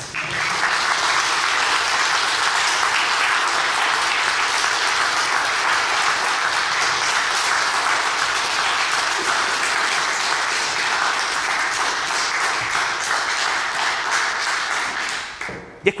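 An audience applauding steadily for about fifteen seconds, dying away near the end.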